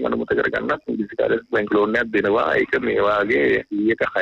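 Speech only: continuous talk from a radio talk show, with a narrow, muffled sound that has almost no treble.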